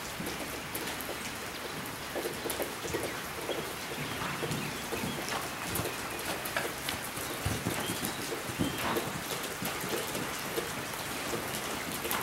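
Steady rain on a metal roof overhead: a dense, even hiss of many small scattered drop clicks.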